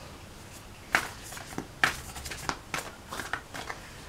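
A deck of oracle cards being handled and shuffled: sharp card snaps about a second and two seconds in, then a run of lighter taps and clicks.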